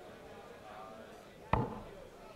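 A steel-tip dart striking a sisal bristle dartboard once, a single sharp thud about one and a half seconds in.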